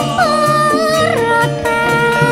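A woman singing a Javanese campursari song into a microphone over the band's accompaniment, amplified through a PA sound system. Her voice slides between notes with a wavering vibrato.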